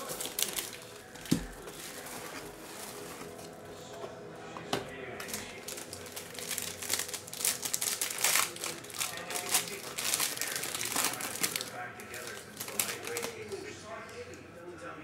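Plastic wrapper of a trading card pack crinkling as it is handled and torn open, in repeated crackly bursts. A single knock about a second in.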